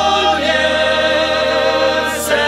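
Moravian cimbalom band of violins, cimbalom and double bass playing a folk song while several voices sing along, holding a long note together.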